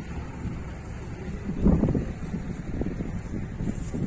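Wind rumbling on the microphone, with a few louder gusts around the middle.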